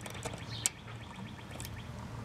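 Faint clicks of a wire's push-on connector being worked onto the HERM terminal of an AC condensing unit's run capacitor, over a low steady hum.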